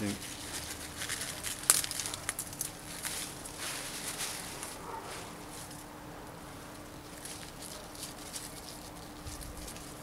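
Sea beet leaves and stalks rustling and snapping as they are picked by hand, with sharp crackles in the first half, the loudest about two seconds in, then quieter handling.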